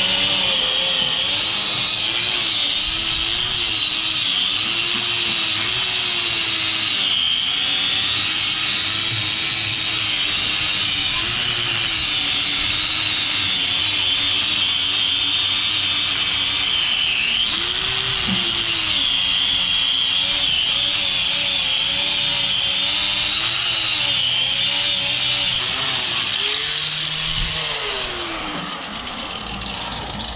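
Corded angle grinder with a wire wheel running against the sheet-metal seam of a car's inner fender and frame rail, stripping factory seam filler back to bare metal around a crack. Its pitch wavers up and down as it is pressed on and eased off, and it winds down a few seconds before the end.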